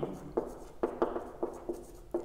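Marker pen writing on a whiteboard: a handful of short strokes and taps as a short expression is written out.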